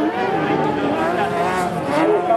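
Carcross racing buggies' motorcycle-derived engines revving on a dirt track, the pitch rising and falling as the drivers go on and off the throttle.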